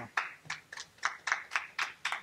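A few people clapping lightly, about six sharp claps a second, as a talk ends.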